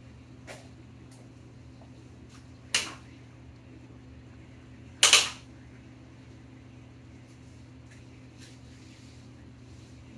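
A steady low hum, like a fan, with two sharp loud noises about three and five seconds in, the second the louder, and a few faint knocks between them.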